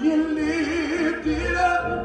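Gospel praise team singing together in harmony. One voice holds a note with a wide vibrato through the first second or so, then moves to a higher note.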